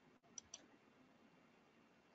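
Near silence broken by two faint clicks in quick succession about half a second in, a computer mouse button clicked to advance the presentation slide.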